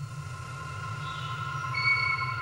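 Sustained synthesizer drone from the soundtrack: a low rumble under steady held tones, with a higher tone joining near the end.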